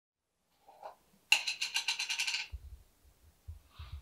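A quick metallic jingling rattle lasting about a second, followed by a few dull low thumps.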